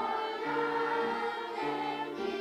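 Children's choir singing a song in long, held notes that change pitch every half second or so, over a lower sustained accompanying part.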